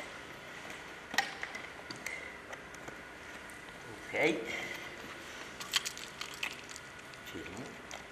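Faint rustling and a few light clicks from a dog wheelchair's straps and frame as it is fitted and fastened around a dog, with one click about a second in and a small cluster of clicks about six seconds in.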